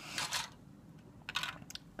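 Plastic model-kit parts trees and their clear plastic bag being handled. A short crinkling rustle comes near the start, then a few quick light plastic clicks about a second and a half in.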